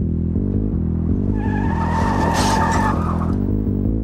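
Car tyres squealing for about two seconds as a car brakes hard, over a steady bass-heavy music track.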